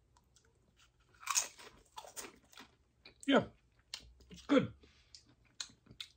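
A person chewing a crunchy tortilla chip with dip, a run of crunches starting about a second in, with a short "yeah" midway.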